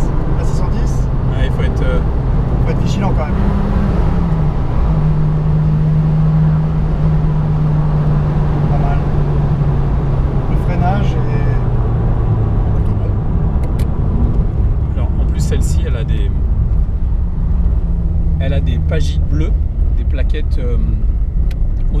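Venturi 260 LM's mid-mounted turbocharged PRV V6 running at cruising speed, heard from inside the cabin as a steady drone. Its pitch holds level for several seconds, then drops gradually about twelve seconds in as the revs come down.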